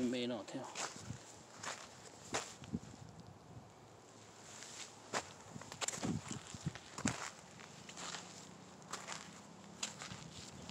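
Footsteps on dry, sandy field soil, coming as irregular crunching steps.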